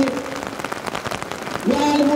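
Steady rain pattering down during a pause in a man's chanting over a microphone. Near the end his voice comes back, rising into a long held tone.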